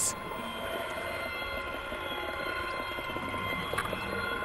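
Background music: a steady, held drone of sustained tones, with no beat or melody moving.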